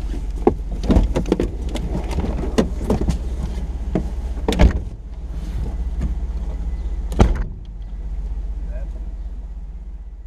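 Parked car's engine idling with a steady low hum, while the occupants unbuckle and climb out: a series of clicks, rustles and knocks from seatbelts, seats and doors, with a louder knock about seven seconds in, after which only the idle is left.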